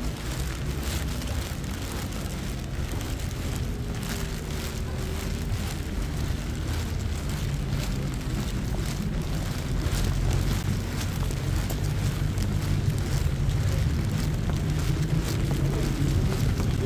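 City street in the rain: a steady low rumble of traffic with a light hiss of rain, growing louder in the second half.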